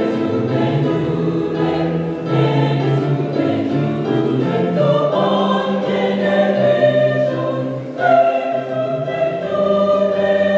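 A church choir singing a gospel song in parts, holding sustained chords. The sound dips briefly just before the eighth second, then a new, louder phrase comes in.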